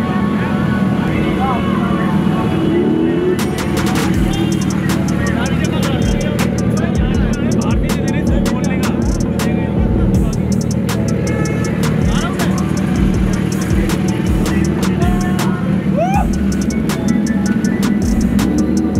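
Music with a regular beat over crowd voices and the engines of a group of superbikes running.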